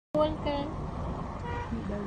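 A person's voice speaking briefly over a steady low background rumble, starting abruptly as the recording begins.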